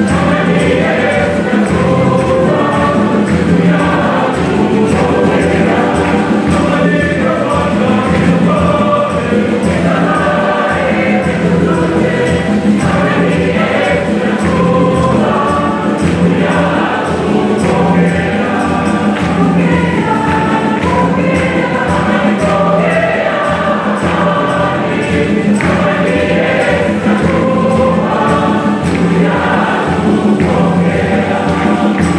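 Church choir of many voices singing a hymn over a steady beat.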